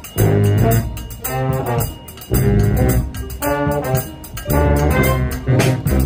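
A brass band playing a lively tune: trumpets and trombones lead, with saxophones and a sousaphone bass under them. Regular drum hits keep the beat.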